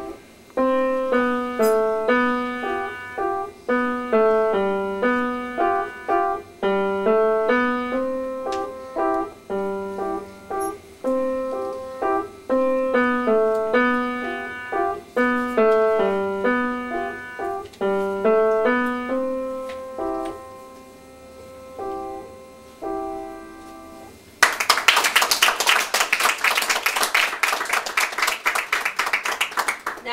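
A child playing a simple waltz on an upright piano, single notes in a steady lilting rhythm with a few held notes, the piece ending about three-quarters of the way through. The audience then applauds for the last few seconds.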